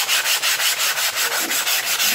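Coarse sandpaper on a hand sanding block rubbing back and forth over a foam wing core: a rhythmic hiss of quick, even sanding strokes.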